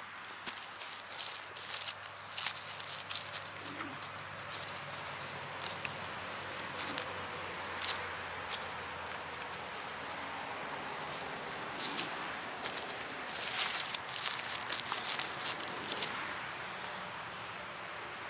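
Dry leaf litter, pine needles and twigs on the forest floor rustling and crackling as they are stepped on and picked through by hand. The crackles come in irregular bursts and are busiest about three-quarters of the way through.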